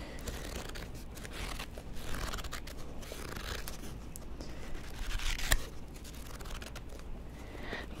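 Paperback book handled close to the microphone: pages and cover rustling and scratching, with a few sharper crackles, the sharpest a little past halfway, over a steady hiss of rain.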